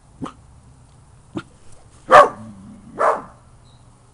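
A dog barking: two short, sharp sounds, then two loud barks about two and three seconds in, the first of the pair the loudest.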